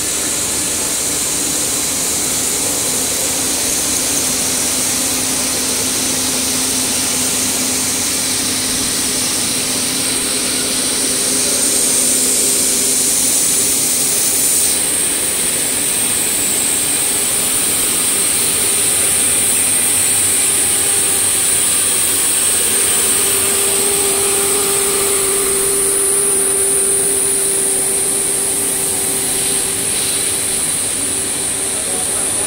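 Rubber hose production line machinery running steadily: a continuous mechanical noise with a strong high hiss and a low hum underneath.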